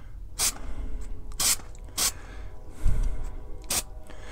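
Aerosol can of Rust-Oleum Multicolor Textured spray paint hissing in four short, light shots as small spots are touched up.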